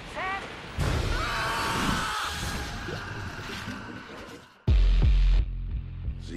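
Film-trailer soundtrack: dramatic music and sound effects, then a loud, deep boom hit lasting under a second about three-quarters of the way through.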